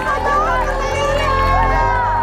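Several people's voices talking over a steady background music bed.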